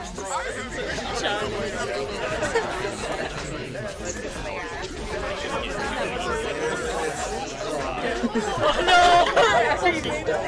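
Many voices talking over one another at once, a babble of overlapping chatter, getting louder about nine seconds in.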